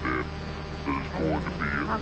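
A voice in an old radio broadcast recording making short, quieter vocal sounds between lines of dialogue, over a steady low hum from the recording.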